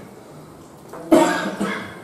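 A person coughing: one sharp, loud cough about halfway in, then a smaller second one.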